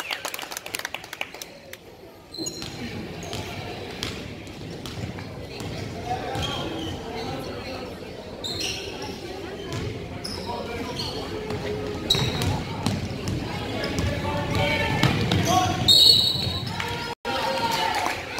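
A basketball bouncing on a hardwood gym floor during play, among voices of players and spectators, with the echo of a large gym. The sound cuts out for an instant near the end.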